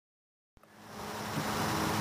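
Dead silence, then about half a second in a steady outdoor background noise with a low hum fades in and grows louder.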